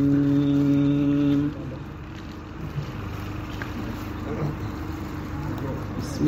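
Male voice chanting a Sufi devotional poem holds one long steady note, which ends about a second and a half in. A quieter stretch follows with only a faint held tone and hall noise.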